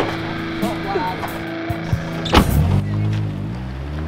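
A car engine pulling away and gathering revs, taking over about two and a half seconds in, just after a sharp knock; before it, the last notes of the song ring on.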